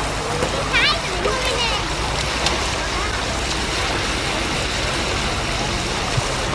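Steady wash of small waves on a beach with low wind rumble on the microphone, and distant children's voices, with a brief high-pitched shout about a second in.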